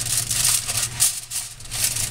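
Aluminium foil crinkling and crackling as it is peeled back off a baking pan.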